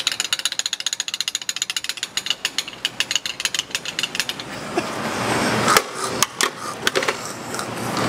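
Gas pump nozzle in a car's filler neck clicking rapidly for about four and a half seconds, then a few scattered clicks.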